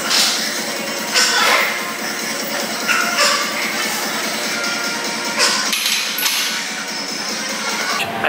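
Background music with a few short, sharp hits over it.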